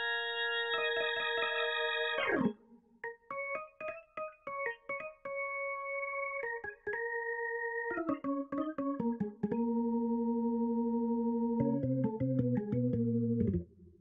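Sampled Hammond B2/B3 hybrid organ (8Dio Studio Vintage Organ) played through its modelled Leslie engine. It starts with a held chord, then a run of short chords and notes, then a long sustained chord with a low bass note added near the end. It stops sharply just before the end, sounding clean, without the dirt of the real Leslie samples.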